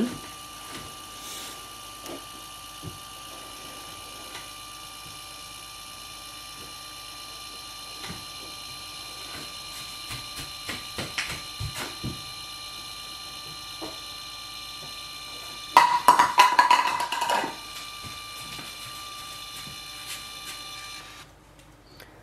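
Kodak Step ZINK photo printer printing: a steady, high-pitched motor whine with scattered faint clicks as the photo paper feeds slowly out of the slot. A louder, rougher burst lasts about two seconds late on, and the whine stops about a second before the end.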